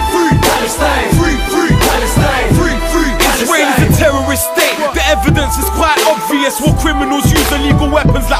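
Hip-hop track: a rapped vocal over a beat with deep bass notes and drum hits.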